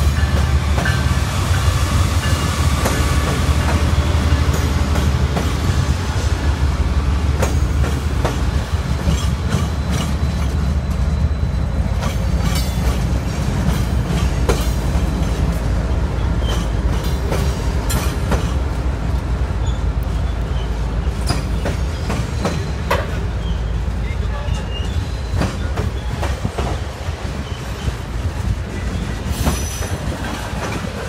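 Freight train passing close by: a Norfolk Southern GE ES44 diesel leading Union Pacific diesel locomotives, engines rumbling, then covered hopper cars rolling past with wheels clacking over rail joints and some wheel squeal.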